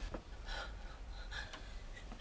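A person's quiet, sharp breaths: two short gasps about a second apart.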